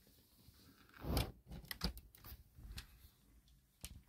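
Handling noise: a string of soft knocks and clicks as a heating pad's plastic controller and cord are picked up and moved. The loudest knock comes about a second in, and a sharp click comes near the end.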